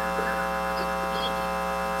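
Steady electrical hum with a buzzy stack of many even overtones in the sound system, holding one unchanging pitch throughout.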